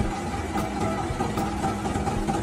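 Excavator engine running steadily.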